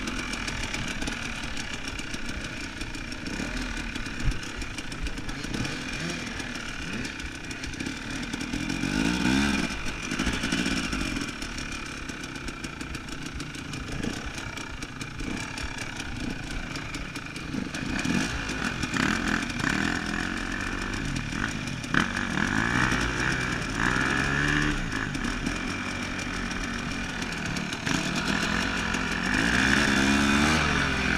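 Two-stroke dirt bike engine running at low speed on a trail, with the pitch rising a few times as the throttle is opened. A couple of sharp knocks come through as well.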